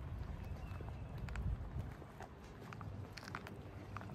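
Footsteps on a paved path, with a few light clicks and a steady low rumble of wind on the microphone.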